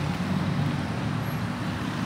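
A car moving slowly, heard from inside the cabin: a steady low engine and road hum.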